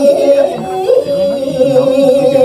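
A woman singing a Balinese geguritan (tembang) verse into a microphone, holding a long drawn-out ornamented note that slides up and steadies again about a second in.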